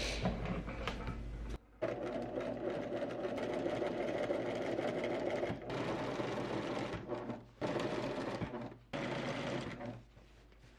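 Pfaff Tiptronic 6232 electric sewing machine stitching fabric at a steady speed, stopping briefly a few times and starting again.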